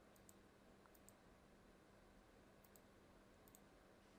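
Near silence with faint computer mouse clicks, coming in quick pairs about four times, over a faint steady hum.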